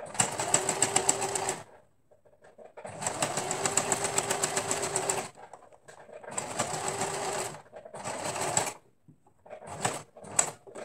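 Domestic sewing machine stitching fabric in four short runs with pauses between: a steady whir with rapid, even needle clicks. The longest run comes about three seconds in.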